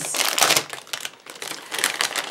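Clear plastic packaging crinkling in short bursts as hands handle it and work an artificial succulent out of the bag, loudest at the start.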